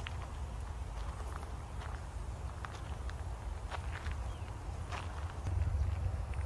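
Footsteps of a person walking: scattered soft scuffs and clicks roughly once a second, over a steady low rumble that grows a little louder near the end.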